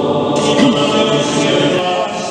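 A choir of many voices singing a hymn at Mass, holding long notes.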